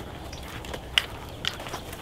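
A person walking outdoors carrying spearfishing gear: a few soft footsteps and light knocks of gear over a quiet background hiss.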